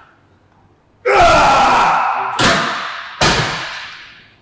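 Heavily loaded plate-loaded leg press clanking at the end of a set: a loud bang about a second in, then two sharper metal clanks, each fading away, mixed with the lifter's gasping breath.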